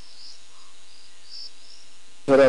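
Crickets chirping at night: a run of short, high-pitched chirps, about three a second.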